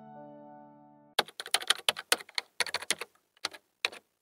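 The last notes of a short musical jingle fade out, then about a second in a rapid run of computer-keyboard typing clicks begins and stops just before the end, matching text typed into a search bar.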